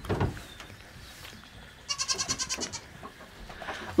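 A Nigerian dwarf goat bleating once about two seconds in: a short, quavering call that wavers rapidly.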